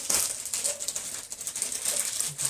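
Plastic saree packaging crinkling and rustling as it is handled, a dense run of small crackles.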